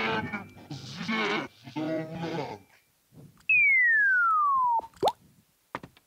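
Wordless vocal sounds, then one long pure whistle sliding steadily down in pitch for over a second, the loudest sound here. A quick rising whistle blip with a click follows, in the manner of a comic falling-then-landing sound effect.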